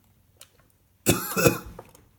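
A person coughing: a short, hard burst of two coughs about a second in.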